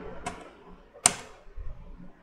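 Computer keyboard keystrokes: a few separate key presses, the loudest about a second in.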